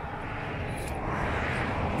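Passing road traffic: a steady rush of tyre and engine noise that slowly grows louder.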